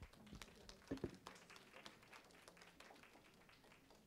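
Faint, scattered hand-clapping from a small audience, densest at first and thinning out over the last couple of seconds, with a brief voice sound about a second in.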